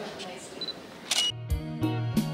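A few camera shutter clicks over a murmuring room, then about a second in the sound cuts abruptly to instrumental music with strong, evenly spaced low notes.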